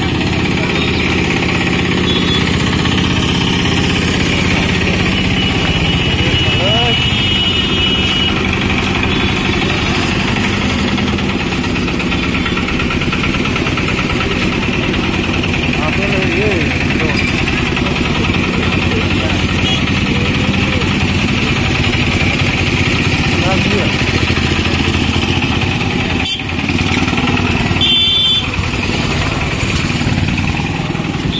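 Busy market-street traffic: motorcycle and auto-rickshaw engines running and idling close by, with people's voices over them. A few short high-pitched tones sound about eight seconds in and again near the end.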